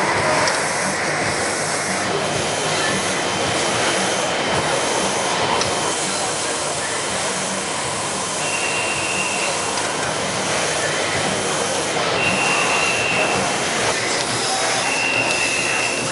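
Steady din of a busy exhibition hall around a robot display, crowd chatter mixed with machine noise. Three short high beeps, each about a second long, sound in the second half.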